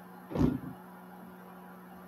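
A single dull thump about half a second in, of a body thrashing on padded couch cushions.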